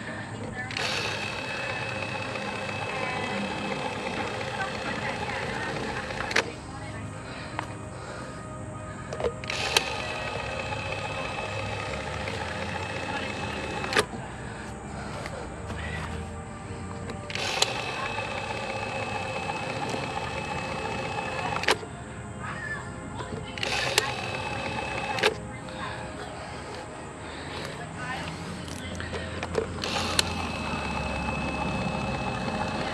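Ryobi One+ 18V power caulk gun's motor whining as it pushes caulk from the tube. It runs in spells of a few seconds and stops between them, with a sharp click at most starts and stops.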